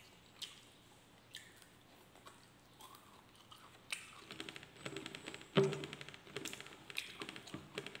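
Close-miked chewing of food eaten by hand: a few sparse wet mouth clicks at first, then dense, crisp crunching from about four seconds in, loudest a little past halfway.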